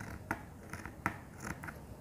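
Scissors cutting fabric: a string of about six short, faint snips as the blades work along the edge of the cloth.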